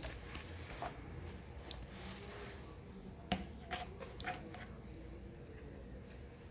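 Faint rustling of yarn doll hair being gathered and tied by hand, with a few short soft clicks a little past halfway, the sharpest one the loudest sound.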